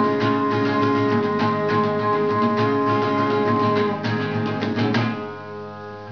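Nylon-string classical guitar strummed rapidly in an instrumental passage. Near the end the strumming stops and the last chord rings out and fades.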